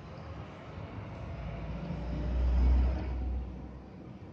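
A motor vehicle passing: a low engine rumble swells to a peak about two and a half seconds in and fades away within the next second, over steady outdoor background noise.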